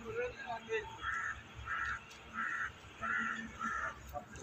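A crow cawing five times in a steady series, about one call every 0.7 seconds, starting about a second in.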